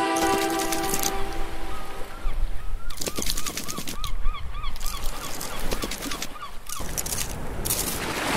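Cartoon sound effects for an animated crab: a high chirping voice repeated about four times a second, rising and falling with each call, over light clicking taps.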